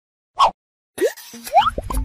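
Cartoon-style 'bloop' pop sound effects, each a short pitch rising quickly. One comes about half a second in, then several more follow close together from about a second in, over a low rumble near the end.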